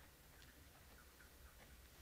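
Near silence: room tone with a low hum and a few faint ticks.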